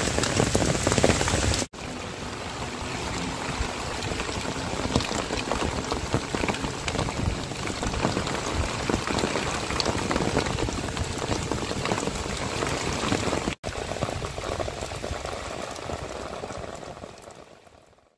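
Heavy rain falling on a road and roadside vegetation, a dense, steady patter. It drops out for an instant twice and fades away near the end.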